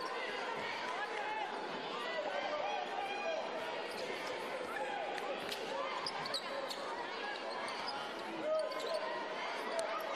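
A basketball being dribbled on a hardwood court, with a steady background of voices in the arena.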